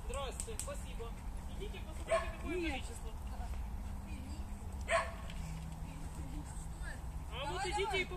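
A small dog barking and yipping a few times, around two seconds in and again near the end, over faint voices.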